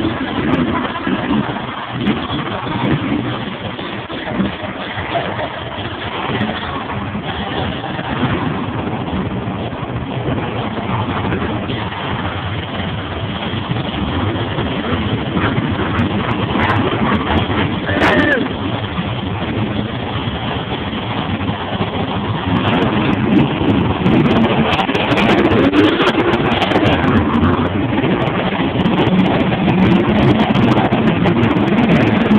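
Monster trucks' supercharged big-block V8 engines rumbling and revving in an enclosed arena over crowd noise, building louder in the last third.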